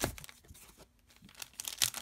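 Clear plastic packaging crinkling and sheets of card stock rustling as they are handled. There is a sharp click at the start, a quiet moment, then a quick run of crinkles near the end.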